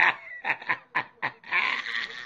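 A man laughing in a run of short, breathy bursts, about four a second, ending in a longer breathy exhale near the end.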